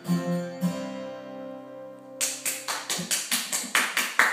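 The final chord of a guitar song rings and fades out. About two seconds in, hand clapping starts at a steady pace of about five claps a second.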